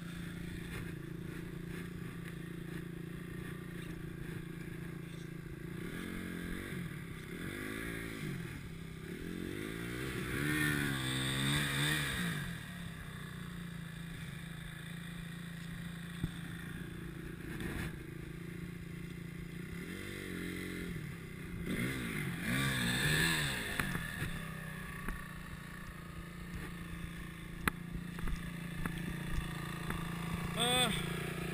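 Trail dirt bikes' engines: one idling steadily throughout, while a bike revs up and down in two bursts, from about six seconds in and again from about twenty seconds in, as it struggles through deep mud.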